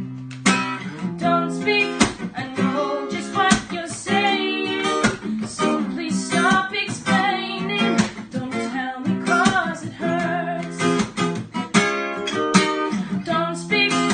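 Acoustic guitar strummed in a steady rhythm, with a woman singing a slow song over it.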